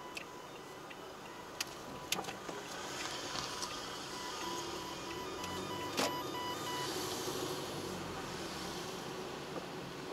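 A car driving on a city street, heard from inside the cabin: steady road and engine noise that grows a little after about three seconds. A few sharp clicks sound over it, and a faint broken beeping tone runs through the first half.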